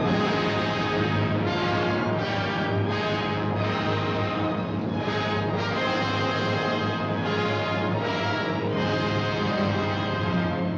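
Orchestral trailer theme music with brass and timpani, held loud and steady.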